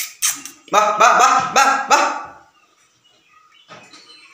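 Young goat kids bleating: a quick run of about four calls, then a pause.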